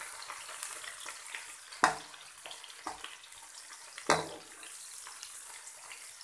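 Sliced onions sizzling in hot oil in a steel karahi, a steady hiss, while a metal slotted spoon stirs them and knocks against the pan, sharpest about two seconds in and again about four seconds in. The onions are at the start of frying, meant only to go light brown.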